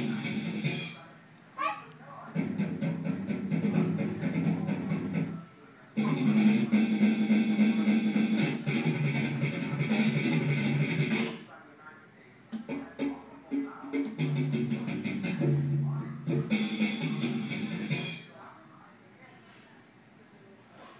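A play-area musical drum playing short recorded music snippets with guitar and drums as it is struck. Several snippets start and cut off abruptly, with short quiet gaps between, the longest lasting about five seconds.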